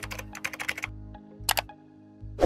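Computer keyboard typing: a quick run of keystrokes for about the first second, then a single louder click about one and a half seconds in, over light background music.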